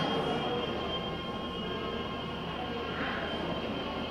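Steady indoor background noise with a thin, faint high whine running through it; no distinct event.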